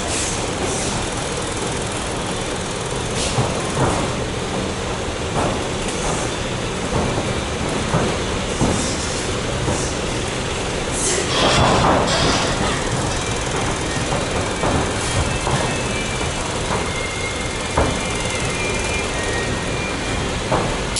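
Muay Thai clinch practice: irregular thuds and slaps of bodies, knees and bare feet on the ring canvas over a steady rushing background noise. A louder rush of noise swells briefly about eleven seconds in.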